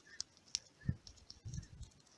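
A few faint, separate clicks of taps on a smartphone's on-screen keyboard as letters are typed one at a time.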